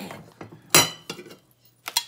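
Ceramic dinner plates clinking together as they are handled: a sharp ringing clink about three quarters of a second in, a few lighter knocks, and a second ringing clink near the end.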